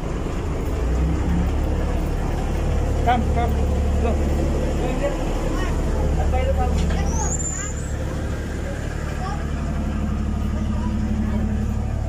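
A ship's machinery runs with a steady low hum, with faint voices in the background and a brief high rising whistle about seven seconds in.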